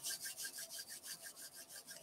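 Palms of two hands rubbed briskly together: a faint, fast, even swishing of skin on skin at about ten strokes a second, growing fainter toward the end.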